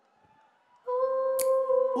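Near silence, then about a second in a single steady note is held, the first sound of a live song; one sharp click partway through.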